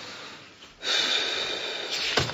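A long, breathy exhale that starts abruptly a little under a second in and carries on steadily, louder than the faint hiss before it.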